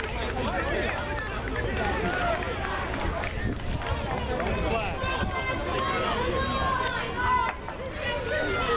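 Sideline chatter: several voices talking and calling out at once, with louder, higher-pitched shouting from about halfway through, over a steady low rumble.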